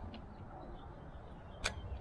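Faint outdoor background noise with a single sharp click about one and a half seconds in.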